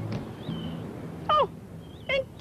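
A single short, high-pitched vocal cry falling steeply in pitch, like a falsetto 'ooh', about a second and a half in. It follows a faint high chirp and the tail of background music.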